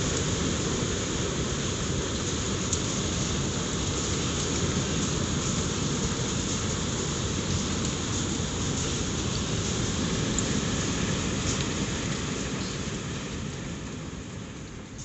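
Heavy hail pelting down on gravel and tarp-covered outdoor furniture: a dense, steady roar of stones striking, with scattered sharp ticks of single hailstones. It grows fainter near the end.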